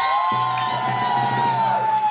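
A guest-entrance music sting: a sudden low hit, then one long held high note over a steady bass that sinks slightly and ends near the end, with studio audience cheering underneath.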